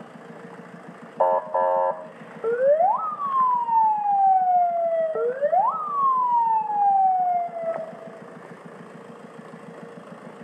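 Police vehicle siren: two short buzzy horn blasts, then two wails that each rise sharply and fall slowly, over a low engine hum.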